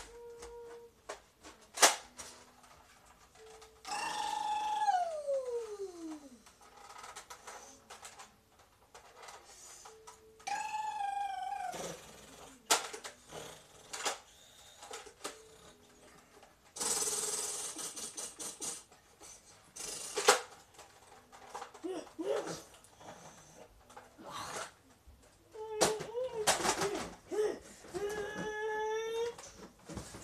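Wordless voice-like calls: a long whine falling steeply in pitch, then short wavering calls later on, with a few sharp clicks and a hiss of about two seconds in between.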